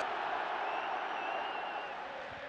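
Steady noise of a large football stadium crowd, with a faint high whistle through the middle.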